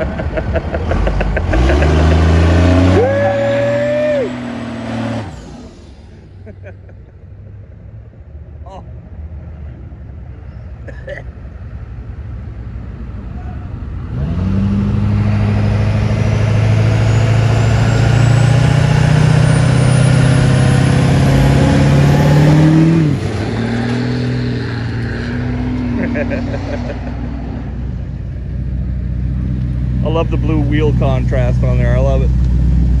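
Old hot-rodded trucks' engines driving past one after another. A 1950s Chevrolet flatbed truck with an upright exhaust stack revs as it pulls away in the first few seconds. After a quieter stretch, a rusty 1940s pickup goes by loudly for about eight seconds and cuts back suddenly.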